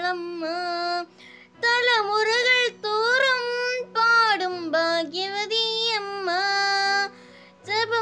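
A young girl singing solo in long held notes with a slight waver, over a soft backing of steady sustained chords. She breaks for breath about a second in and again near the end.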